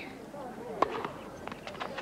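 A few sharp knocks from tennis play: the ball being struck and bouncing on a hard court, two close together about a second in and two more near the end.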